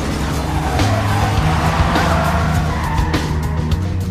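Film car-chase soundtrack: a car's engine and tyres skidding, mixed with an action music score with a steady low beat.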